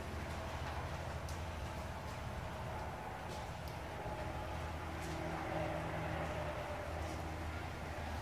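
A car rolling slowly forward at low speed: a steady low hum with a faint higher whine.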